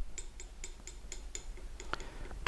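Light, rapid, evenly spaced ticking, about four to five ticks a second.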